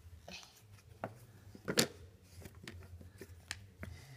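Jigsaw puzzle pieces being handled in a puzzle tray: a scatter of light taps, clicks and scrapes, the loudest a little under two seconds in.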